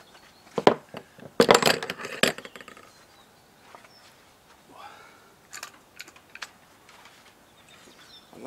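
Metal seat box legs with ball-socket feet clinking and clattering as they are handled and set down on a table: a sharp knock just under a second in, a burst of clatter around one and a half to two seconds, then a few lighter clicks later.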